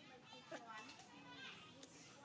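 Faint high-pitched voices calling and chattering, with a sharp click about half a second in.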